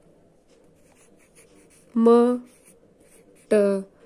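Faint scratching of a graphite pencil on notebook paper, broken by two short spoken syllables.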